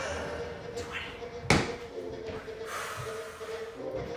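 Medicine ball dropped onto the floor with one heavy thump about a second and a half in, over faint background music.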